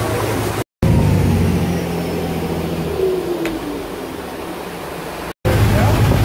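Tour boat's engine running steadily, heard on board as a low hum, becoming quieter about three seconds in. The sound cuts out completely twice for a moment.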